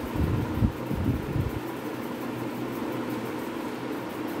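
Whiteboard eraser rubbing across a whiteboard in several quick irregular strokes during the first second and a half, then a steady background hum.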